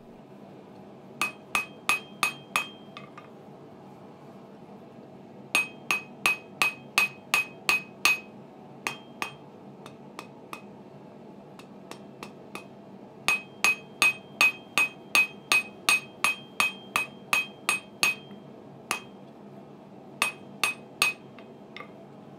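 Cross-peen hand hammer striking red-hot mild steel flat bar on a small 30 kg Acciaio steel anvil, flattening and drawing out a bottle-opener handle. The strikes come in runs of quick blows, about three to four a second, each with a bright metallic ring, with pauses between runs.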